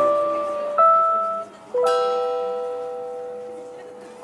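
Closing notes of a live acoustic rock song: two held notes one after another, a short break, then a final note that rings out and slowly fades.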